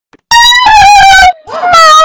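Two very loud, high-pitched wailing cries. The first falls in pitch as it goes, and the second begins about a second and a half in.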